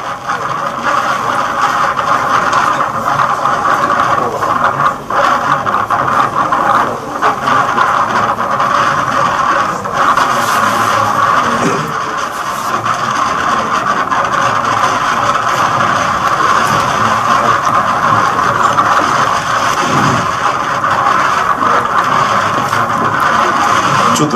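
Outboard motors of Zodiac inflatable boats running over rough, choppy water in strong wind: a loud, steady, noisy sound with no breaks.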